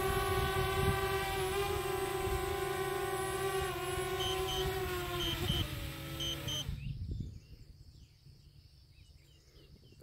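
DJI Spark quadcopter's propellers whining steadily as it hovers and touches down, then the motors spin down with a falling pitch and stop about seven seconds in. Three pairs of short electronic beeps sound while it settles.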